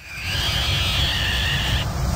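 A film creature's drawn-out, high-pitched screech, rising slightly in pitch over a low rumble and breaking off shortly before the end.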